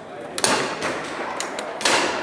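Foosball being played: the hard ball is shot by the rod men and bangs off the table, giving two sharp knocks about a second and a half apart with lighter clicks between them.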